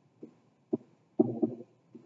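Marker pen writing on a small handheld whiteboard: a few short dull taps and scratches, with a longer run of strokes a little past halfway.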